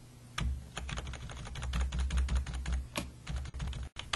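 Computer keyboard keys tapped over and over in quick, uneven succession, many short clicks, over a low rumble.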